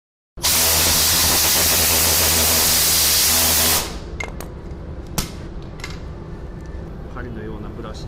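Air-powered angle polisher with a wool buffing pad run free at speed, a loud air hiss over a steady hum, to spin the pad clean. It stops abruptly after about three and a half seconds, followed by a few light clicks and knocks.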